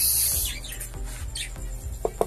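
Small cage birds chirping in short falling notes over steady background music, with a brief loud hiss at the very start.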